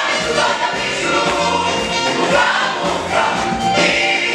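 Church gospel choir of men and women singing together, amplified through microphones.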